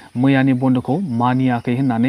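A man speaking into a microphone.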